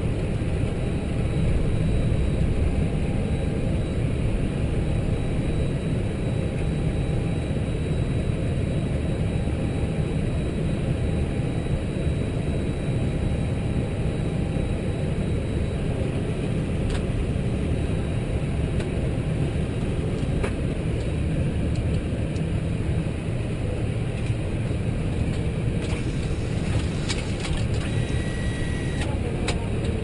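Steady cockpit rumble and hum of an Airbus A320 on the ground, with a few faint steady tones in it. There are single light clicks about midway, as a hand works the overhead panel, and a short cluster of clicks with a brief beep near the end.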